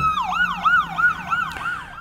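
Electronic emergency-vehicle siren switching from a long steady wail into a fast yelp, its pitch rising and falling about four times a second, with a fainter steady siren tone held behind it.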